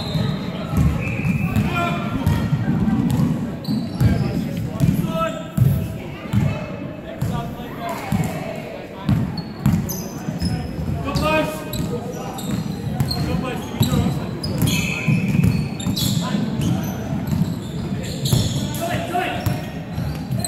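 Indoor basketball game in a large, echoing gym: a ball bouncing repeatedly on the hardwood court and sneakers giving short high squeaks, with players' voices calling out now and then.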